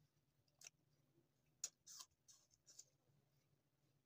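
Faint crunching of crisp apple slices being chewed: a few short, crisp clicks through the middle of an otherwise near-silent stretch.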